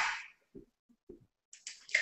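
An egg being cracked and its shell pulled apart over a glass bowl of milk and water: a few faint, sharp clicks near the end. A brief, louder noise fades out right at the start.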